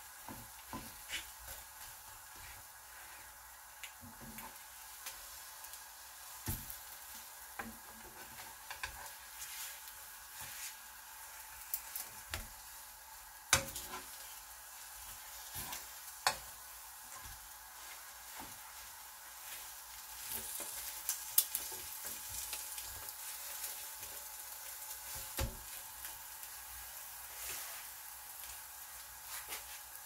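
Egg toast frying in a non-stick pan: a steady faint sizzle, with scattered sharp clicks and scrapes of a metal spoon against the pan.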